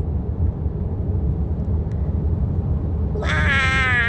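Steady low road rumble inside a moving car's cabin. About three seconds in, a long high-pitched vocal sound begins, sliding slightly downward in pitch.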